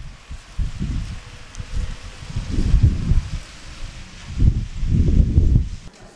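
Wind buffeting the microphone outdoors: loud, irregular low rumbling gusts over a faint hiss, swelling about two and a half seconds in and again near the end.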